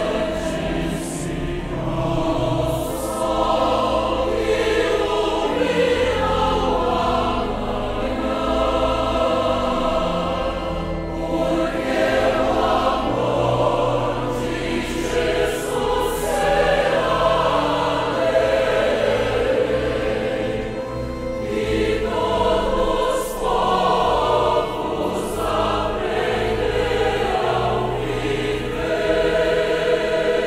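Mixed choir of men's and women's voices singing a hymn in Portuguese, with electronic keyboard accompaniment holding low notes beneath the voices.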